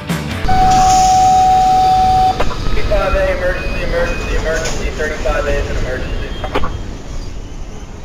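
Freight train rolling past at close range with a low rumble. For about two seconds a single steady high-pitched squeal rises above it, typical of wheel flanges on a curve. Then people's voices are heard over the passing cars.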